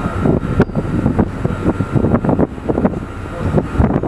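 Heavy wind noise on the microphone at sea: irregular, gusty buffeting over a low, steady rumble.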